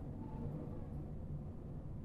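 upHere H85K6 low-profile CPU cooler's fan running under the Cinebench heat test, a quiet steady low hum with no clicks or rattles.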